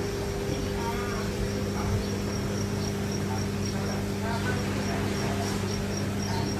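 Steady low electrical hum of aquarium equipment, with a faint high-pitched chirp repeating evenly two or three times a second and brief murmurs of voices in the background.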